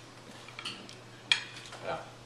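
A single sharp clink of tableware, such as a fork on a plate, about a second and a half in, with a few fainter small taps before it.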